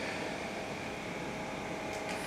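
A steady mechanical hum and hiss with a few faint, constant whining tones, unbroken throughout.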